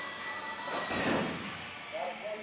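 Cessna 172RG's retractable landing gear swinging up under hydraulic power: a steady high whine stops about halfway through, as a loud rushing clunk comes when the gear moves into its wells.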